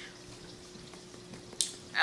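Quiet room tone with a faint steady hum and one sharp click near the end.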